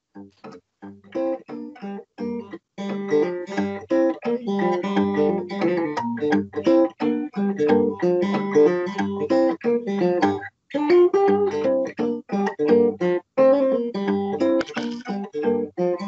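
Acoustic guitar played fingerstyle in an alternate tuning, low E string down to D and A string down to G, so the two open bass strings ring under melody notes on the treble strings. A steady stream of plucked notes, sparse for the first couple of seconds, with a brief break about ten and a half seconds in.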